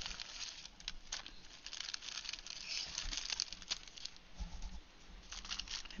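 Clear plastic packaging crinkling and rustling as it is handled, with many small irregular crackles and a few soft thuds.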